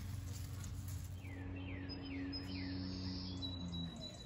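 A small bird calling four times, about two a second, each a short falling note, over a faint steady low hum.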